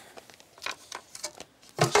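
A few light knocks of loose wooden planks being picked up and handled.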